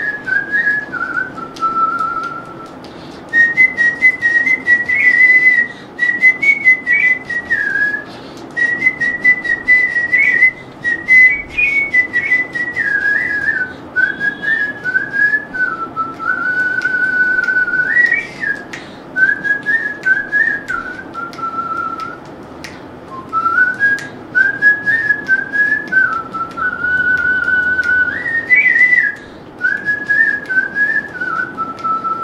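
A man whistling a song melody with his lips: a single clear note that steps up and down through short phrases, broken by brief pauses for breath.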